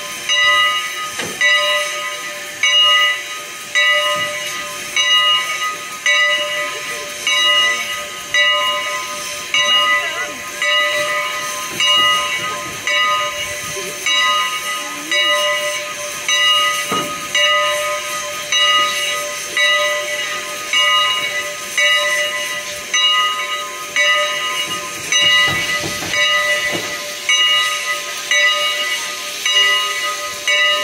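Steam locomotive CN 89 standing at rest, hissing steadily with a whine that pulses about once a second from its steam-driven air pump working.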